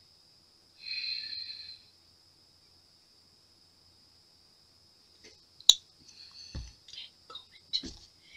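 Mostly quiet, with a short whispered breath about a second in. Near the end comes a sharp click and a couple of soft knocks as a plastic mixing cup is handled and set down on the table.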